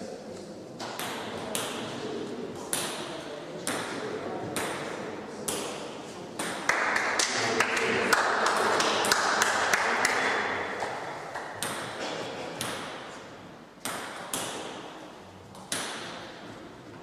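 Table tennis ball clicking sharply off bats and table in a hall, roughly once a second. Louder voices rise over it for about four seconds in the middle.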